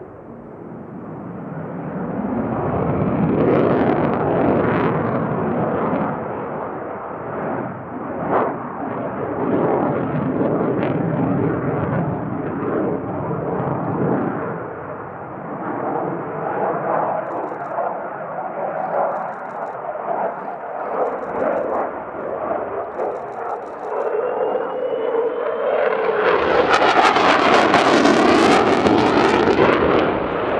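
Twin-engine F/A-18C Hornet fighter jet manoeuvring overhead: loud, rough jet-engine noise that swells and fades. A rising whine comes in a few seconds before the end, then the jet noise surges to its loudest and harshest.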